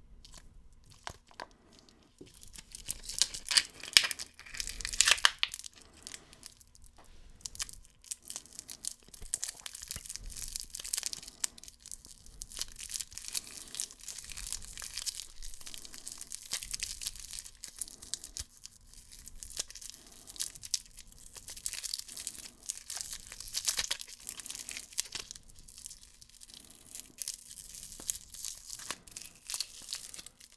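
Clear cellophane wrapper around a lollipop crinkling and crackling as it is handled and pulled open at its twisted neck, in a long irregular run of rustles and crisp clicks. The loudest crackles come a few seconds in.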